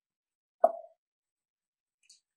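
Online chess board's move sound effect: a single short tone with a quick fade about half a second in, signalling that the opponent has just made his move.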